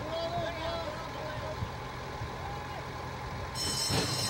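Faint crowd murmur and racetrack background. About three and a half seconds in, the starting-gate bell begins to ring, and moments later the gate doors bang open as the horses break: the start of the race.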